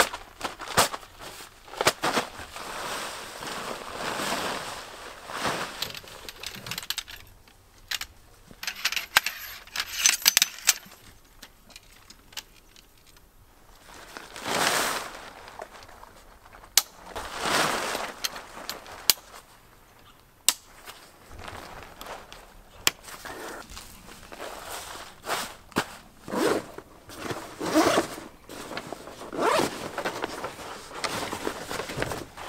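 Nylon tent fabric rustling and swishing as it is pulled from its stuff sack and shaken out, in uneven bursts with a few sharp clicks of gear being handled. Near the end, a zipper on a canvas bag is opened.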